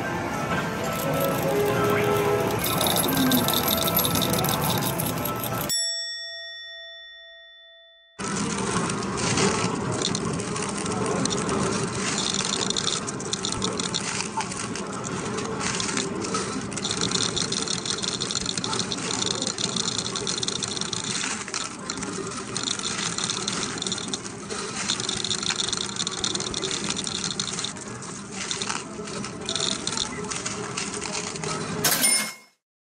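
Medal-pusher arcade machine's electronic music and repeated chiming dings, dense and loud. The sound fades away about six seconds in and cuts back in suddenly two seconds later.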